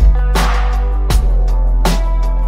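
Computer-generated lo-fi hip hop instrumental: a slow, steady drum beat under held chords and a sustained bass.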